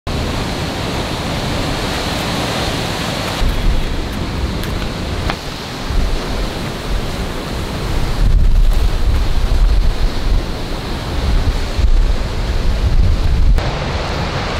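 Wind buffeting the microphone over the wash of ocean surf breaking below sea cliffs, a steady rushing noise whose low rumble gets heavier about halfway through.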